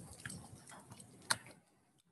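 Aioli being stirred in a stainless steel mixing bowl: faint wet squishing with small ticks, and one sharp click of the utensil against the bowl about a second in.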